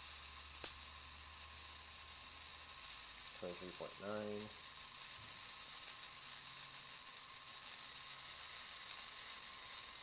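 A powered-up ionocraft lifter's high-voltage corona discharge makes a steady hiss over a faint low hum. One sharp snap comes under a second in. A brief voice sound is heard a little before the middle.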